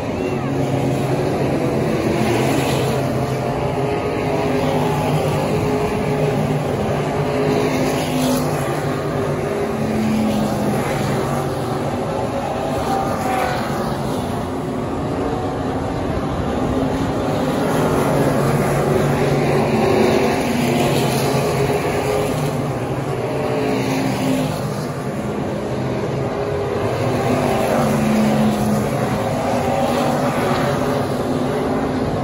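Several dirt-track modified race car engines running together around the oval, their sound swelling and fading as the cars pass by.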